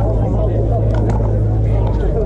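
Pickleball paddles striking plastic balls, a few sharp pops from the courts, over distant players' voices and a steady low rumble.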